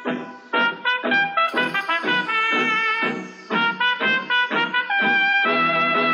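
Loud DJ remix dance music from a PA sound system, its trumpet-like lead playing a run of short, clipped notes that give way to longer held notes near the end.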